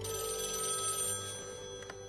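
A landline telephone ringing: one high, rapidly trilling ring lasting about a second, then fading.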